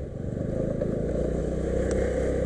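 Scooter engine running steadily while riding, with road and wind noise. It grows a little louder in the first half second, then holds even.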